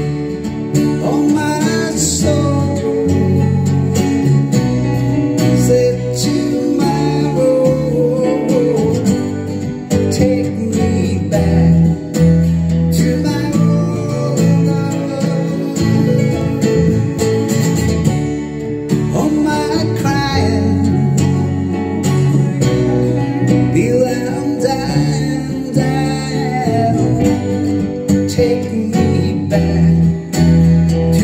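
Acoustic guitar playing a melodic instrumental passage over bass and keyboard accompaniment.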